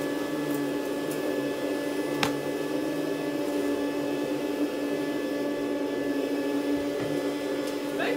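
Canister vacuum cleaner running steadily as its powered floor head is pushed over the floor: an even hum with one short click about two seconds in.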